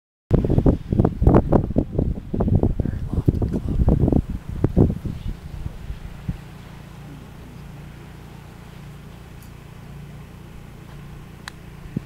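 Gusty wind buffeting the microphone for about five seconds, then a low steady hum. Near the end comes a single sharp click: a golf club striking the ball off the tee.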